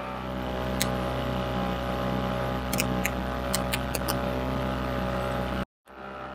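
Small two-stroke outboard motor driving an inflatable dinghy, running at a steady speed, with a few short sharp ticks about three to four seconds in. The sound breaks off for a moment near the end.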